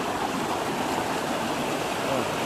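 Fast-flowing stream water rushing and splashing over rocks in a small whitewater cascade, a steady rush.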